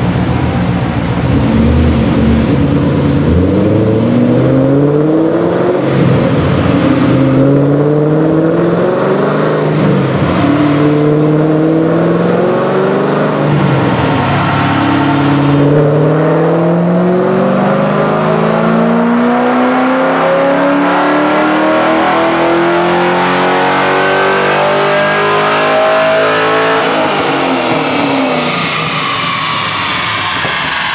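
2010 Camaro SS 6.2-litre V8 through prototype long-tube headers and exhaust, making a full-throttle run on a chassis dyno. The pitch climbs in a series of rising runs, each cut short by an upshift and each longer than the last, and the throttle comes off near the end.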